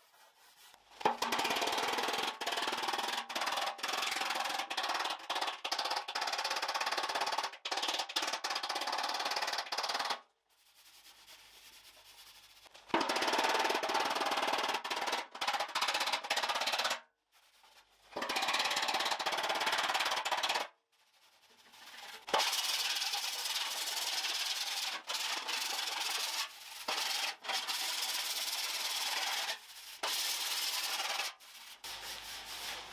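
A body file scraping back and forth across the bare sheet steel of a Mazda RX-7 FD3S front fender being straightened. It comes in four bouts of a few seconds each, with short pauses between.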